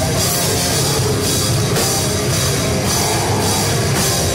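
Metalcore band playing live and loud: heavy guitars over a drum kit, with repeated cymbal crashes.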